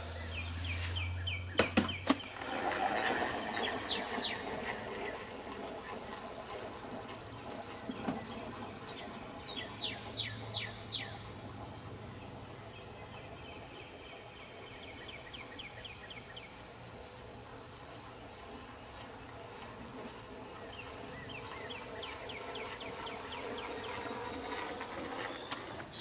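Outdoor ambience of birds and insects: groups of short, quick falling chirps and trills repeat several times over a faint steady background. In the first two seconds granular lawn growth regulator is poured from a jug into a broadcast spreader's plastic hopper, with a few clicks.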